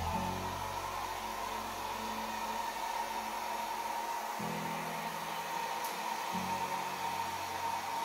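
Handheld hair dryer running steadily, its air stream pushing wet acrylic pouring paint across a canvas: a constant rush of air with a steady whine.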